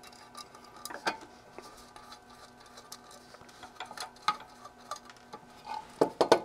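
Faint scattered clicks and ticks of a small screwdriver working tiny screws out of a metal RF module's case, with a sharper click about a second in and another about four seconds in.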